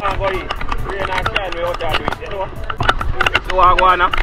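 Voices of several people calling out, without clear words, broken by frequent sharp clicks and taps on the microphone over a low rumble.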